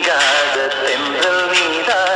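A Tamil film song: a singing voice holding wavering notes over instrumental backing.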